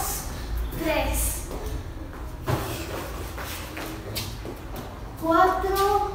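A young girl's voice calling out a few short words, with a few soft knocks and shuffling steps on a concrete floor in between.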